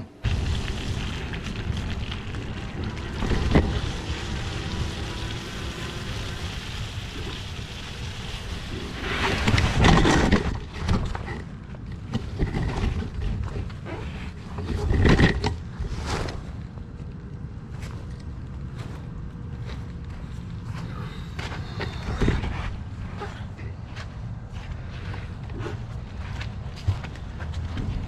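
Wind buffeting a GoPro action camera's microphone while riding an e-bike, with a steady rumble of riding noise and several louder bumps and knocks, the biggest about ten and fifteen seconds in.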